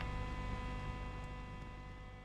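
Brinsea Mini Eco incubator's heat-circulating fan humming faintly: a steady hum with a few fixed tones, slowly fading.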